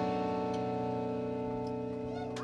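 The final chord of a live rock song ringing out on electric guitar and bass through amplifiers, held steady and slowly fading away.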